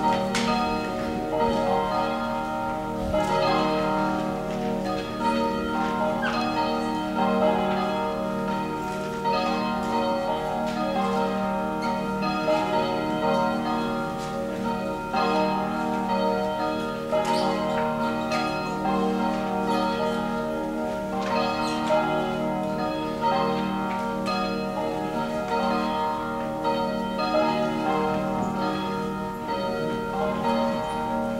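Church bells ringing, strike after strike, their tones overlapping and ringing on.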